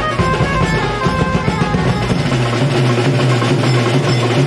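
Live street-band music: large barrel drums and snare drums beaten with sticks in a steady rhythm, with a melody line played over them. The deepest bass drops out about two and a half seconds in.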